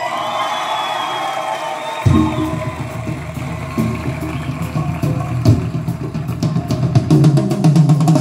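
Music played from a Carrozzeria FH-P609 head unit through an Audio Art 200.2XE amplifier and a pair of bookshelf speakers. Melodic lines come first, then about two seconds in a bass line and drums come in.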